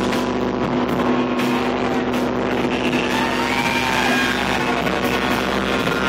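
A live instrumental band of vibraphone, drums, keyboards and saxophone playing loudly: a sustained droning passage with steady held tones, and pitch glides sweeping up and down about halfway through.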